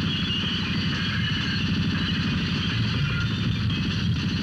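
Sustained automatic gunfire in a continuous rapid rattle, the dubbed sound effect of a film shoot-out.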